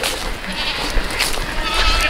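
Goats bleating faintly in the distance near the end, over a steady low rumble of wind on the microphone.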